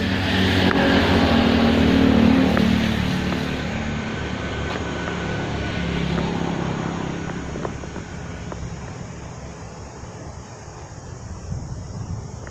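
A motor vehicle engine running steadily, loudest a couple of seconds in and then slowly fading.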